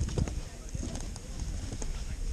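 Footsteps on a wooden plank deck: a walking rhythm of hollow knocks from boots on the boards.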